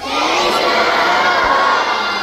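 A large crowd of schoolchildren shouting and cheering together. It bursts out suddenly and starts to die down after about two seconds.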